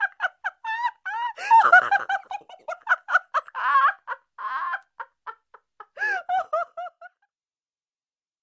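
High-pitched laughter, giggling in quick bursts, that dies away about seven seconds in.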